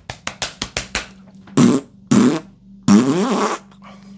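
Blown fart-like raspberry noises: a rapid spluttering run in the first second, then two short blasts and a longer wavering one, followed by a laugh.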